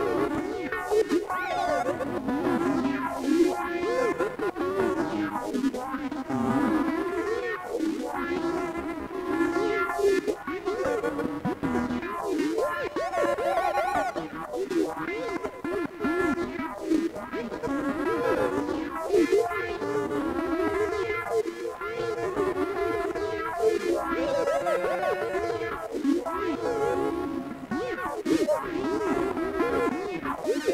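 Electric guitar played continuously, with notes that waver and bend in pitch over a dense, sustained wash of tones.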